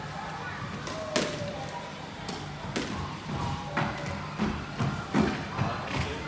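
Sharp knocks of a squash ball, ringing in the court: about seven irregular hits, the sharpest about a second in.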